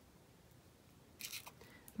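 Crepe paper crinkling and rustling under the fingers as a glued strip is wrapped around a wire stem: near silence at first, then a short patch of crisp rustling in the last second.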